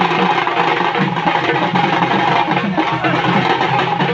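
Several drummers playing slung barrel drums together in a fast, dense rhythm.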